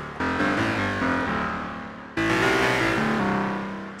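Native Instruments Massive software synth playing the 'Dissonant Guitar' preset, a dense, dissonant, guitar-like tone with its filter cutoff opened wide. Two chords are struck about two seconds apart, each fading away while its lower notes shift.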